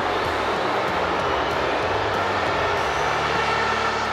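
Large stadium crowd making a steady roar of noise during the penalty, with a low steady hum underneath from about three seconds in.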